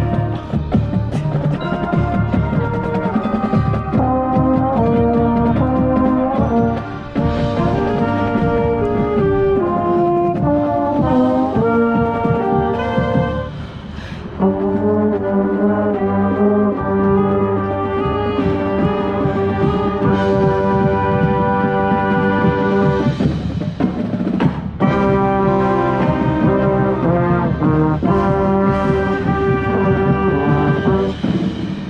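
A marching band playing, with brass chords and melody led by trombones played close by and percussion underneath. The music breaks off briefly about 7, 14 and 25 seconds in.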